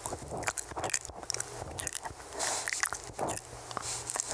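Unintelligible whispering close into a microphone: breathy, wordless hiss broken by many short, wet mouth clicks and lip smacks.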